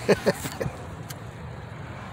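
A man's brief laugh in the first moment, then a steady low rumble inside the vehicle cabin, with a faint click from the phone being handled about a second in.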